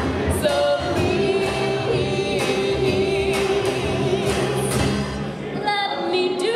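Live folk band: several women singing together, one holding a long note, over accordion and violin with a steady beat on a large drum.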